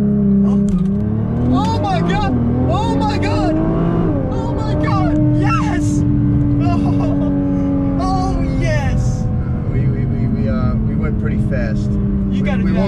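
Nissan GT-R's twin-turbo V6 at full throttle in a launch, heard from inside the cabin: the engine pitch climbs, drops at quick automatic upshifts about a second in and about four seconds in, then holds and slowly eases off. Excited voices exclaim over it.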